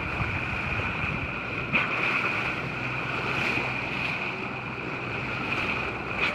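Water rushing along the bow of a sailboat under way, with steady wind noise on the microphone. One short click a little under two seconds in.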